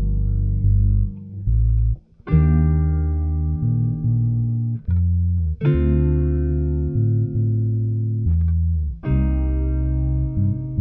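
Instrumental music: slow chords, a new one struck about every three seconds and left to ring over a held low bass.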